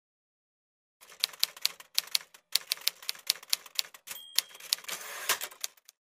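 Typewriter keys clacking in a quick, uneven run that starts about a second in, with a brief high ding a little past the middle.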